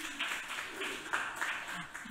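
Audience applauding, an even patter of clapping.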